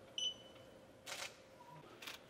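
Handheld barcode scanner giving one short high beep as it reads the QR code on a phone's vaccination certificate, the usual signal of a successful scan. About a second later comes a brief faint rustle.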